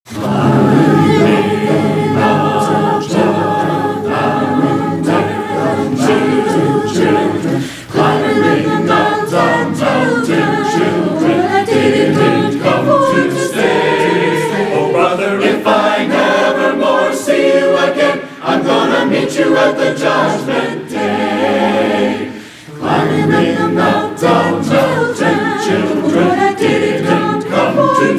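Mixed choir of men's and women's voices singing a gospel spiritual in harmony, with short breaks between phrases about 8, 18 and 22 seconds in.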